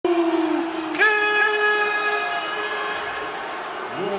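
Two long horn-like notes opening an entrance theme, the second louder and a little higher, coming in about a second in and fading away by about three seconds, over the steady noise of a large stadium crowd.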